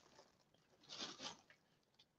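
Near silence with a faint, brief rustle of clothing being handled, in two soft bursts about a second in.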